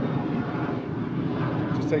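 A steady low rumble of background noise, like a distant engine, with no distinct events.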